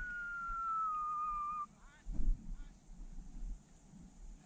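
A long, steady whistle that slides slowly down in pitch and cuts off suddenly about one and a half seconds in.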